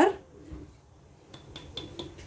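Sugar poured from a drinking glass into a glass mixing bowl of softened butter. It is faint, with a few light glass-on-glass clinks in the second half.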